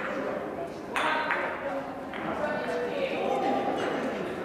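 A gateball mallet strikes the ball with one sharp clack about a second in, which rings briefly in the large hall. A fainter knock follows about a second later.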